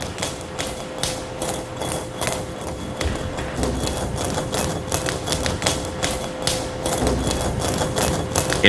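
A quick, uneven run of sharp taps or clicks, about three to four a second, over a steady hum.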